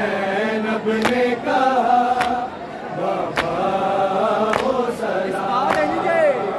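Men's voices chanting a noha, a Shia lament, together in a slow melodic line. A sharp beat keeps time a little more than once a second.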